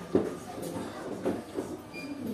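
Indistinct voices in a busy space, with one sharp knock just after the start.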